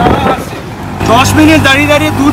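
Auto rickshaw engine running steadily while riding in traffic, heard from inside the open cabin, with a person talking over it from about a second in.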